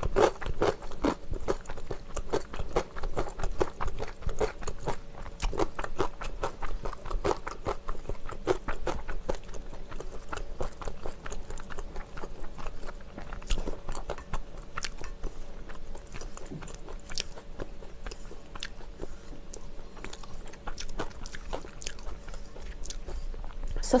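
Close-up chewing and biting of cheese-filled dumpling balls: rapid, irregular wet mouth clicks and smacks with some crunch, under a faint steady hum.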